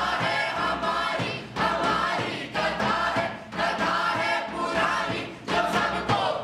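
A group of young men and women singing loudly together in unison, in short phrases about a second long.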